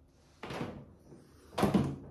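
Two knocks close to the microphone: a softer one about half a second in, then a louder, deeper thump about a second and a half in.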